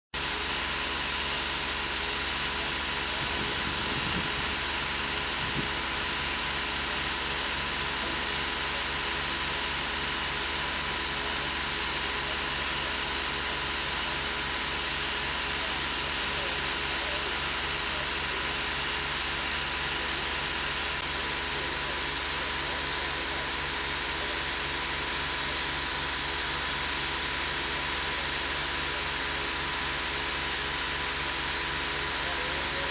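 Steady rushing of water feeding a large wooden mine-pump water wheel as it turns, an even hiss that holds at one level throughout.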